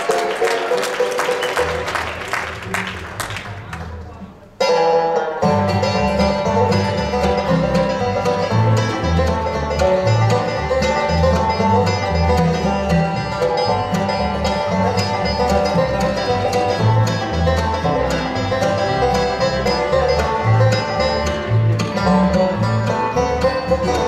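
Audience applause fading out, then a sudden cut about four and a half seconds in to a bluegrass band playing an instrumental intro: five-string banjo, acoustic guitar, mandolin, fiddle and upright bass, the bass marking a steady beat.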